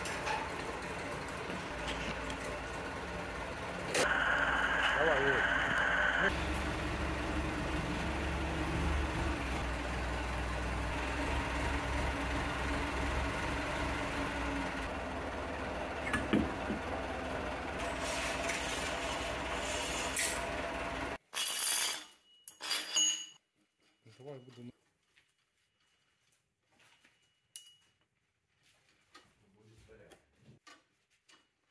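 Electric hoist running under load as a quarter-ton granite blank is lifted, over a steady workshop din; it is louder, with a steady tone, for about two seconds some four seconds in. About two-thirds of the way through the sound cuts off abruptly to near silence with a few light clinks.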